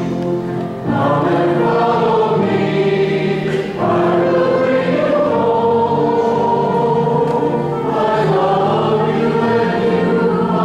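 Choir and congregation singing a hymn, with short breaks between phrases about one second in and again near four seconds.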